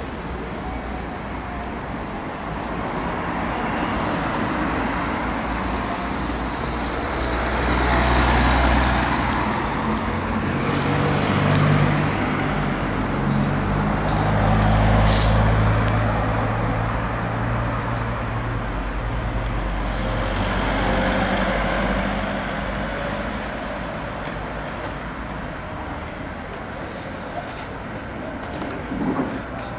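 Road traffic on a town street: vehicles pass one after another, the noise swelling and fading several times. A deep engine rumble runs through the middle, with two brief high hisses about eleven and fifteen seconds in.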